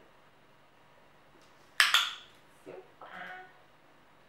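Hand-held dog-training clicker pressed and released about two seconds in: a sharp, loud double click marking the Sheltie's imitation of lying down. A woman's voice follows briefly.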